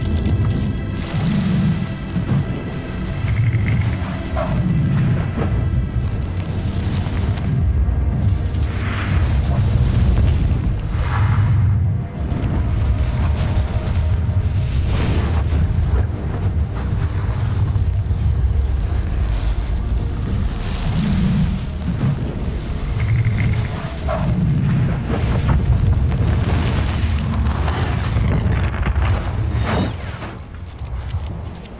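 Dramatic film score built on a deep, booming low rumble that runs throughout. Held tones sound over the first few seconds, and several swelling surges rise later.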